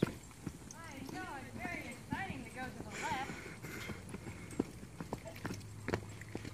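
A horse's hoofbeats on a dirt arena floor as it moves on the lunge, heard as scattered soft knocks. From about one to three seconds in, a high, wavering call rises and falls several times over them.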